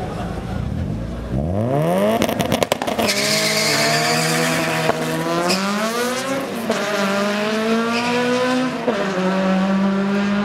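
Two Honda drag cars, a Civic hatchback and a CR-X del Sol, launch off the line about a second and a half in and accelerate hard down the strip. Their engine pitch climbs steeply and drops at each upshift, about three times.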